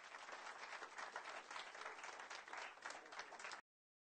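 Applause from a small gathering, many hands clapping together, cutting off suddenly near the end.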